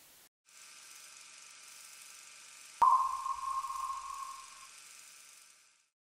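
A steady hiss, then about three seconds in a single sharp ping that rings on in one tone and fades over about two seconds; the hiss fades out near the end.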